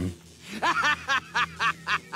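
A man's voice-acted laughter from an animated character: a rhythmic run of short "ha" pulses, about four a second, starting about half a second in.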